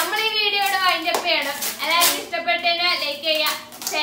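High-pitched children's voices calling out in drawn-out, wavering tones, with several sharp hand claps among them.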